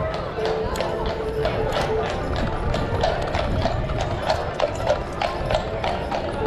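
Horse's hooves clip-clopping at a walk, a few strikes a second, as a horse-drawn street trolley moves along the street, with background music and crowd chatter underneath.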